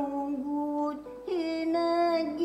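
An elderly woman singing, holding long notes that step from pitch to pitch, with a brief break for breath about a second in.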